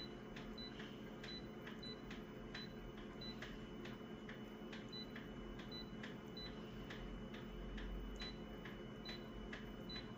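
Office copier's touchscreen control panel giving short, high beeps as a finger presses its on-screen buttons, a dozen or so across the stretch, over a steady run of sharp ticks and a low machine hum.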